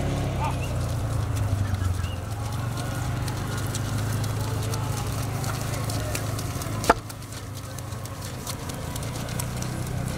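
Two horses walking on a wet, muddy dirt track, their hoofbeats heard over a steady low hum and background voices. A single sharp click comes about seven seconds in, after which the sound is quieter.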